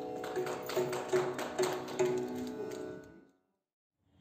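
Live Carnatic music: a sustained melodic line over sharp mridangam drum strokes. It fades out to silence a little after three seconds in.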